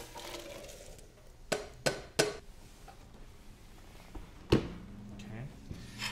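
Hot pea and basil liquid poured from a stainless saucepan into a blender jar, followed by three sharp clinks of pot against jar. About four and a half seconds in comes one heavier knock, the loudest sound, as the jar is set down on the blender base.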